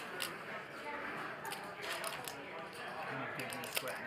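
Faint background talk with a few light clicks scattered through it.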